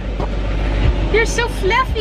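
Short, high-pitched voice sounds about a second in, over a low steady rumble inside a car's cabin.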